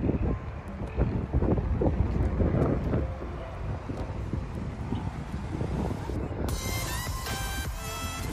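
Wind buffeting the microphone over an outdoor background hum, with gusts strongest in the first three seconds. About six and a half seconds in, music starts suddenly.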